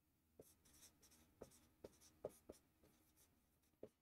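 Marker writing on a whiteboard: a faint series of short, irregular strokes.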